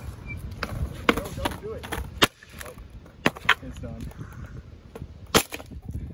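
Worn wooden skateboard deck being stomped to snap it: about five hard wooden cracks at uneven intervals, the loudest a little over two seconds in.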